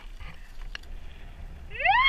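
A person's rising whoop or yell starts near the end, over the low rumble of a mountain bike coasting on a gravel trail; a single light click comes partway through.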